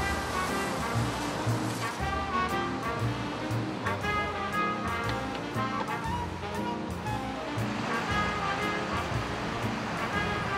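Background music with a steady beat over the hiss of water spraying from a hose onto a car.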